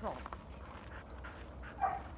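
A dog vocalizing: a short whine falling in pitch at the start, then a single brief, loud yip or bark near the end.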